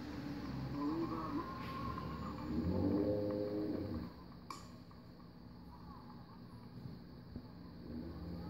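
People shouting outdoors, with one drawn-out yell that is loudest about three seconds in, then a single sharp click.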